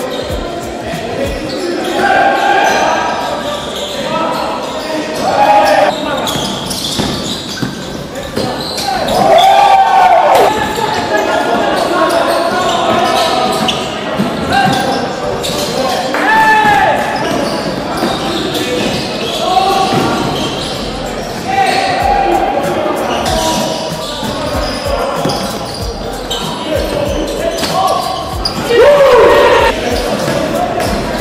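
Sounds of a basketball game in a large echoing gym: a basketball bouncing on the hardwood floor, short sharp squeaks of sneakers on the court, and players calling out.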